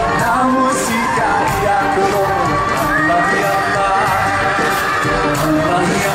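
Live band playing, with bass guitar and drum kit under a sung melody and a steady cymbal beat about twice a second, heard from among the audience.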